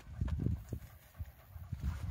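Footsteps of a walker on a tarmac road, heard close to the microphone as irregular low thuds, quieter for a moment about halfway through.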